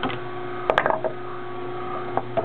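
Omega horizontal masticating juicer running with a steady motor hum, with two quick knocks about three-quarters of a second in.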